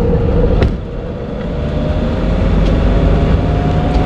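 Mercedes-Benz Vito 115 CDI four-cylinder turbodiesel pulling under added throttle and load, with a steady low rumble and a faint whine rising slowly in pitch, plus a brief knock about half a second in. It is running with a low charge-pressure fault around 2000 rpm, with the boost control held near 90% yet the boost falling short, which the mechanic suspects comes from a sticking turbo.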